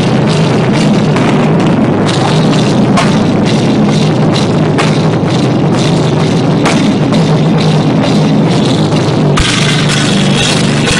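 Live rock band playing hard, drum kit to the fore under guitars, recorded through an old phone's microphone with heavy compression. The sound gets brighter in the high end near the end.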